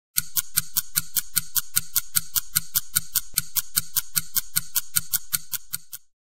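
Film-projector sound effect for a countdown leader: a steady, rapid ticking of about five clicks a second over a faint hum, fading out at the end.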